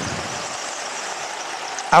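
Go-kart running at speed, heard from its onboard camera as a steady, even noisy drone.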